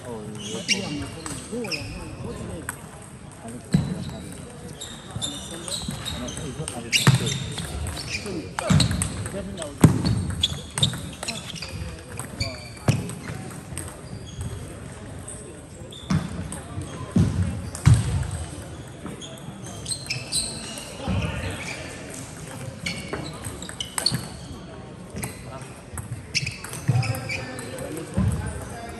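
Table tennis balls clicking irregularly off bats and tables, with occasional low thuds and people talking across a sports hall.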